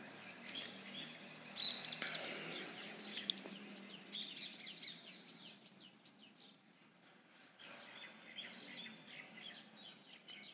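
Small birds chirping faintly: scattered short, high chirps that come in clusters.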